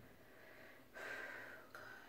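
A person's faint, short breath about a second in, with a shorter one near the end; otherwise near silence.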